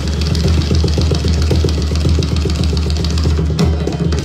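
Tabla and pakhwaj drumming together in a fast jugalbandi passage: a dense stream of rapid hand strokes with a deep, booming bass underneath, accompanied by a harmonium.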